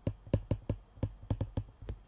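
Stylus tip tapping on a tablet's glass screen while handwriting a word: a quick, irregular run of light clicks, about six a second.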